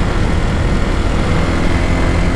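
Wind buffeting the microphone of a camera on a moving motorbike, a loud steady rumble, with the bike's small engine running evenly underneath.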